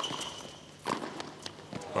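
Tennis shoes on a hard court: a few sharp knocks of footsteps, the first with a short high squeak after it.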